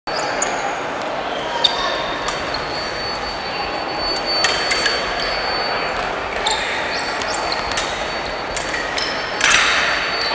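Foil bout on a hardwood gym floor: sharp stamps and thuds of the fencers' feet and occasional clinks of the blades, with a cluster of strikes just before the end, over the steady chatter of a large echoing hall.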